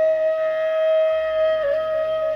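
Background music: a flute holds one long steady note over a low, steady drone, with small pitch ornaments near the end.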